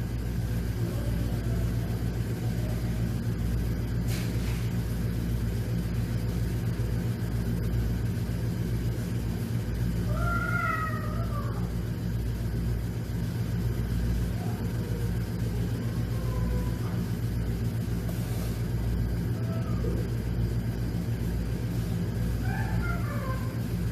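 Steady low machine hum, with a brief faint wavering call about halfway through.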